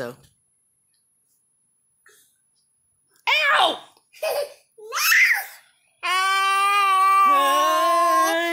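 A young boy's voice: after about three seconds of silence, a few short squeals that rise and fall in pitch, then one long held note of about two and a half seconds, with a second, lower held note joining it partway through.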